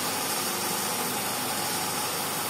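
The hydraulic power pack (electric motor and pump) of a 2000 kN compression testing machine runs with a steady, even noise while it applies load to a concrete test cube.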